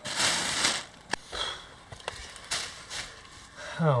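Plastic bag rustling and crinkling as scraps of fiberglass mat are pulled out and handled, in two noisy spells with a few sharp clicks between them.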